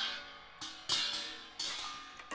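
Improvised percussion: three sharp strikes, each ringing out and fading, the loudest about a second in.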